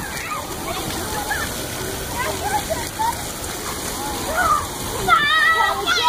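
Water spraying from splash-pad jets in a steady hiss, under the chatter and calls of children playing. About five seconds in, a child's high shout rises above it.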